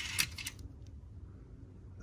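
A few short, sharp clicks in the first half second as a small die-cast toy car is picked up off a hard surface and turned over in the fingers. After that there is only a faint low hum.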